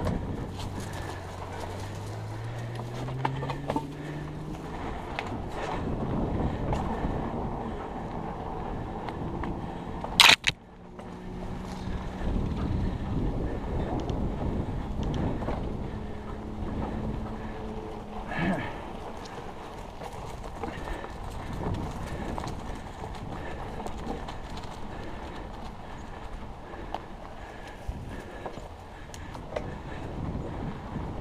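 Riding noise from a Trek Stache mountain bike with 29-plus tyres on a grass and dirt trail: tyres rolling and the bike rattling over bumps. A low hum rises in pitch over the first few seconds, and there is one sharp knock about ten seconds in.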